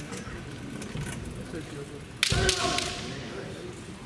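A single sharp crack of a bamboo shinai strike about halfway through, followed straight away by a short shouted kiai, over low hall background noise.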